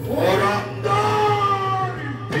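A performer's voice chanting in the drawn-out, half-sung manner of Bhaona dialogue: a rising glide, then long held notes that slowly fall, over a steady low hum.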